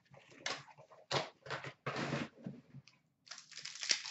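Hands handling a hockey card box and packs: scattered short scuffs and rustles, then a dense crackling near the end as a pack's wrapper is torn open.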